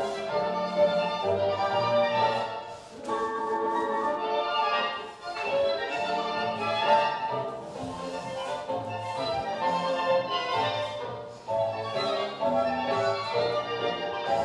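Orchestral tango music with violins, dipping briefly between phrases a few times.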